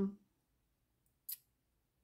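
The tail of a spoken 'um', then quiet, broken about a second and a quarter in by one brief swish of a tarot card sliding against the deck in the hands.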